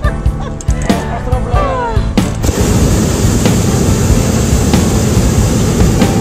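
Hot air balloon propane burner firing: a loud, steady rushing blast that starts sharply a little over two seconds in and runs about four seconds.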